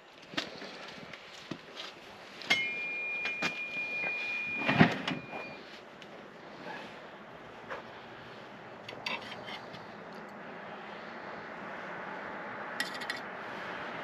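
Metal spatula clinking and scraping on the wire racks of an electric smoker as salmon fillets are handled, in scattered light clicks. A thin high squeal lasts about three seconds, a few seconds in.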